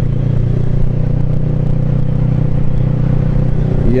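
Motorcycle engine running at a steady, even speed, heard from the rider's seat over a continuous rush of wind noise.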